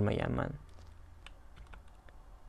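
A man's voice ends about half a second in, then a few faint, scattered clicks of computer keyboard keys.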